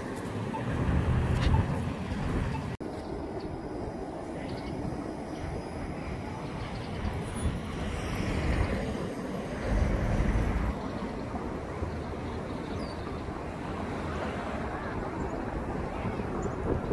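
Street traffic noise from passing cars, with a low-floor streetcar running by on its tracks. There is a brief louder sound about seven seconds in.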